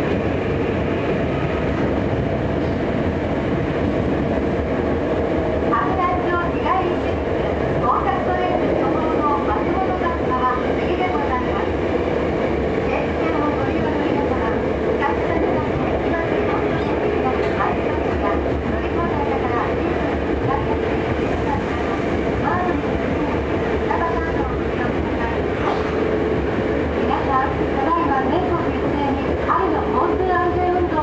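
Hankyu 7300-series electric train running underground, heard from inside the car: steady rumble of wheels and running gear with a steady hum.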